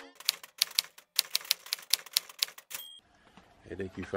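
Typewriter sound effect: a quick, irregular run of key clacks for about three seconds, ending with a short high ding like a carriage-return bell.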